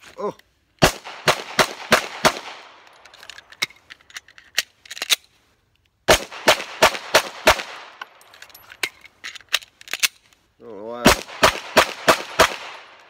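Glock 19 9mm pistol firing three rapid strings of about five shots each, the shots roughly a third of a second apart, with pauses of a few seconds between strings. A man's voice overlaps the last string near the end.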